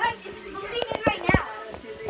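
A child's voice chattering and making playful noises, the words unclear, with a few short knocks about a second in.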